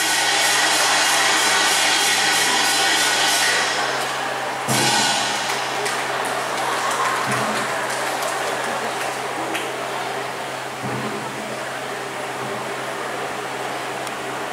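Traditional Chinese opera percussion, cymbals and drums, played in a fast run of repeated crashes. It stops abruptly on a final strike about five seconds in, leaving quieter sound with a few low thuds.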